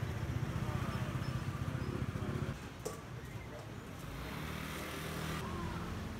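Street-stall ambience: a steady low rumble of traffic and engines with faint voices in the crowd. About two and a half seconds in it gives way to a quieter room background with a single sharp click.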